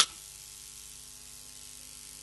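A pause in speech holding only a steady, faint hiss with a low electrical hum under it.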